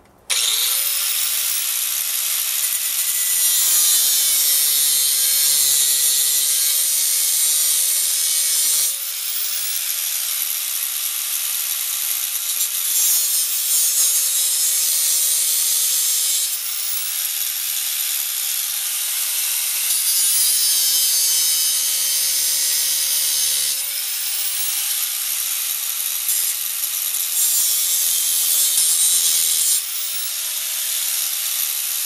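Angle grinder running and grinding steel held in a bench vise: a steady motor whine under a loud grinding hiss. It comes in abruptly at the start, and the whine sags in pitch each time the disc is pressed hard into the work.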